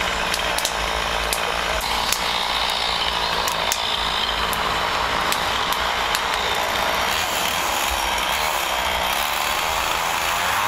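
Two-stroke chainsaw running steadily, with scattered sharp crackles over it.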